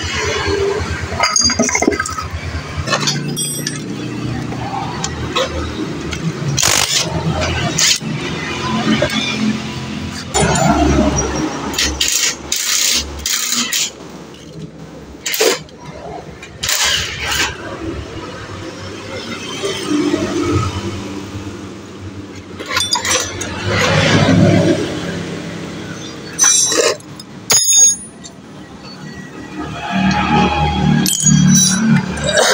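Metal tools clinking and knocking on a Yamaha Mio J scooter's magneto flywheel as it is unscrewed and drawn off the crankshaft with a flywheel puller: a scattered string of sharp clinks and taps.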